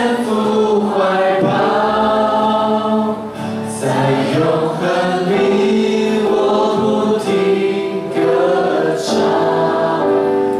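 A worship team and congregation singing a Chinese-language worship song together, in long held notes.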